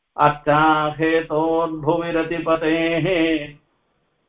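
A man's voice chanting a verse in a steady, sung recitation, one continuous phrase that breaks off about three and a half seconds in.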